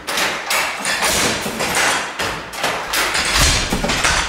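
Hand-worked Jacquard loom weaving: a fast, loud run of wooden clacks and knocks as the weaver jerks the picking cord to throw the fly shuttle and the frame and batten bang with each pick.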